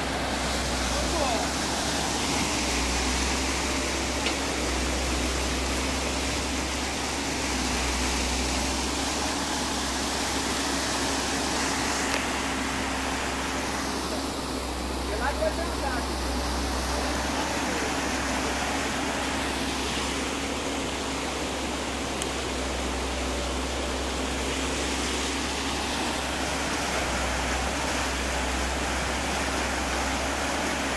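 Muddy water rushing steadily through a breach dug in an earthen pond dam, with the steady hum of a Volvo crawler excavator's diesel engine running underneath.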